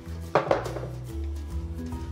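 Two sharp knocks about half a second in, from a heavy wooden case being handled, over background music with a steady bass line.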